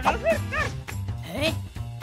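Cartoon characters' wordless, high-pitched vocal chatter: several short rising and falling exclamations, over a steady background music track.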